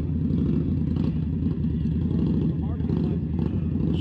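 Motorcycle engine running steadily at low revs close by, its rumble holding even without revving up or down. Faint voices of onlookers come through briefly near the middle.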